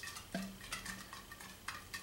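Light clicks and taps of a glass beer bottle and drinking glass being handled and moved on a table.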